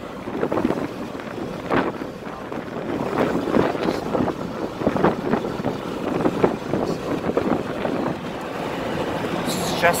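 Road and wind noise in the cabin of a moving car at highway speed, with irregular gusts of wind buffeting the microphone.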